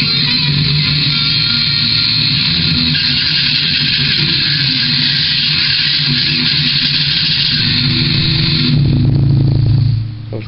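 Distorted electric guitar played through an amp as a dense, continuous wall of sound. Near the end the high end drops away and a low note rings on, cutting off right at the close.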